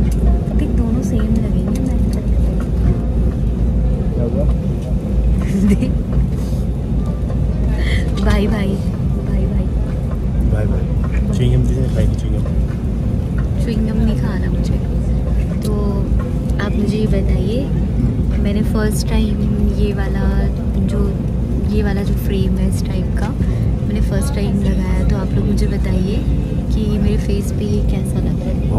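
Steady low rumble of an airliner cabin, with voices talking over it.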